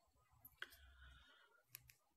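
Near silence with a few faint clicks, one about half a second in and two in quick succession near the end.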